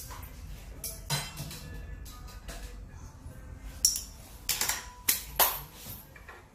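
A handful of sharp metallic clinks and clattering knocks in the second half, over background music.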